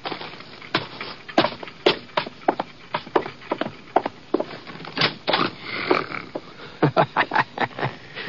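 Radio-drama sound effects: a run of irregular footsteps and knocks, with a man snoring.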